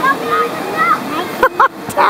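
Whitewater rushing steadily through a river wave, with voices calling over it and two short high shouts about a second and a half in.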